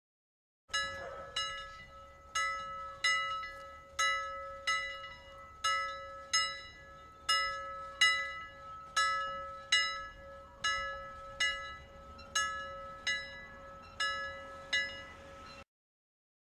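A bell struck in quick, slightly uneven strokes, about one and a half a second, each stroke ringing out over a steady tone beneath. It works as the time-up alarm of a countdown timer that has run out, and it cuts off suddenly near the end.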